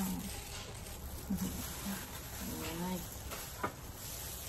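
A woman's short appreciative 'mmm' hums while eating a hot dog, one about a second in and another near the three-second mark, followed by a single sharp click.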